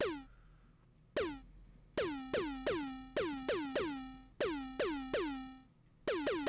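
Chiptune-style Game Boy lead patch on the Serum software synth played as about a dozen short notes at one pitch, each opening with a quick downward pitch drop and fading out. The notes come in an uneven rhythm, sparse at first and then in a quicker run.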